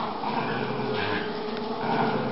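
Small dogs growling and whining steadily while tugging against each other on a toy in a play tug-of-war.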